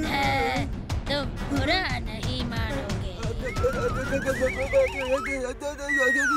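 Cartoon soundtrack: background music under a character's voice in the first half, then a warbling, whistle-like sound effect rising in pitch over about two seconds.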